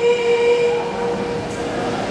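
A young man's voice holding one long sung note of a hamd recitation into a microphone, fading out about a second in, leaving hall reverberation.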